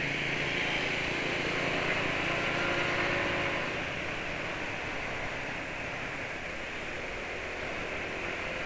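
Automatic scooter being ridden in traffic: a steady rush of engine and road noise that eases slightly about halfway through.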